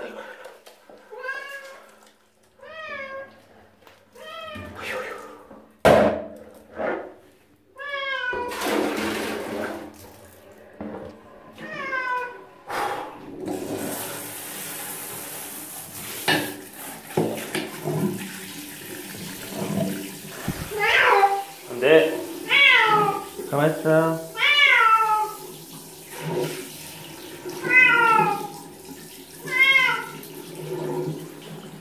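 A domestic cat meowing over and over during its bath, about a dozen calls that each rise and then fall in pitch, several of them close together in the second half. There is a sharp knock about six seconds in. From about midway, water runs steadily from a hand-held shower under the meows.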